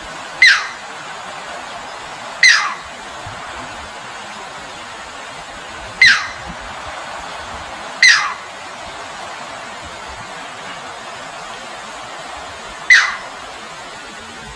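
A bird calling: five short, sharp calls, each dropping quickly in pitch, spaced unevenly over a steady rush of flowing water.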